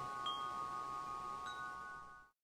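Chimes ringing out at the end of the background music, with a couple of light new strikes. The sustained tones fade away toward the end.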